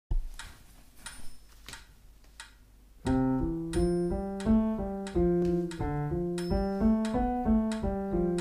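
A metronome ticking at 90 beats a minute, with about four ticks alone, then a piano played with the left hand alone from about three seconds in: an even run of single notes, one finger-exercise pattern in time with the ticks.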